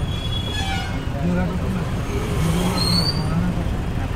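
Busy street traffic: a steady low rumble of truck and motor-vehicle engines close by, with voices mixed in.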